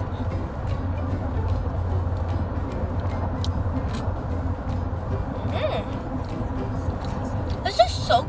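Steady low rumble of a moving car heard from inside its cabin, with a few faint clicks about halfway through.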